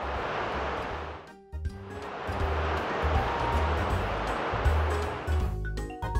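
Two whoosh sound effects for a superhero flying off, the first lasting about a second and the second swelling longer until near the end, over background music with a steady bass beat.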